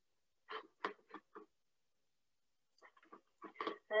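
A few faint, short clicks and taps in two small clusters, about half a second in and again near the end; the later ones run straight into the start of speech.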